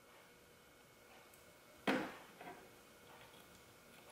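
Mostly quiet, with one sharp click nearly two seconds in and a fainter knock about half a second later: a metal alligator clip and battery cable being handled at a car battery's negative terminal.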